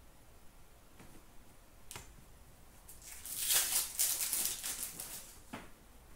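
An 18-19 Upper Deck Platinum hockey card pack being opened by hand: after a single light tap near two seconds in, a couple of seconds of crinkling and rustling as the wrapper is torn and the cards are handled.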